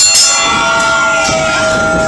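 Wrestling ring bell struck quickly, about four times a second, signalling the end of the match; the last strike comes just after the start and its ringing fades. A held steady note, likely the start of music, carries on underneath.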